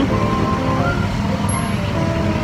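Wind buffeting the microphone, a steady low rumble, under background music with held notes that shift about a second in.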